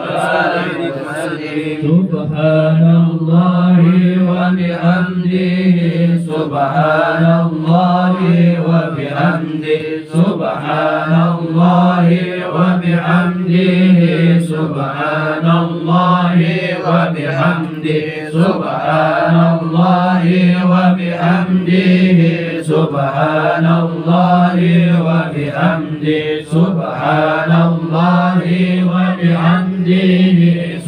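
A group of men chanting Islamic dhikr together in unison, in repeated phrases of about two seconds sung on a steady low pitch, with short breaks between phrases.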